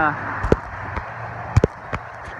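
Footsteps knocking on the wooden plank deck of a steel truss footbridge: a single step about half a second in, a quick pair about a second later, and another near the end, over a steady rushing background.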